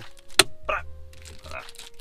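A smartphone snapping onto a magnetic dashboard phone mount: one sharp click about half a second in.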